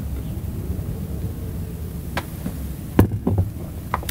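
A man drinks beer from a glass boot over a steady low hum. A loud sharp knock and a few clicks come about three seconds in, with a fainter click before and after.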